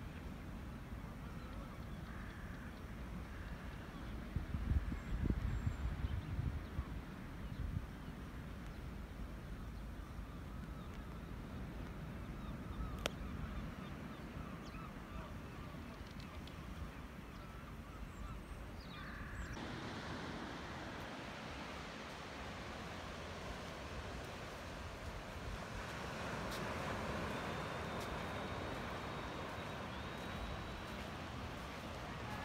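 Seashore ambience: wind buffeting the microphone, loudest about four to eight seconds in, over a steady wash of sea that grows a little louder near the end, with faint bird calls.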